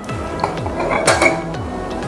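A brass gas-stove burner cap lifted off its burner, giving two light metal clinks, over background music with a steady repeating beat.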